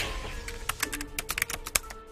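Rapid computer-keyboard typing clicks, about a dozen in a second and a half, played as an end-screen sound effect over soft background music.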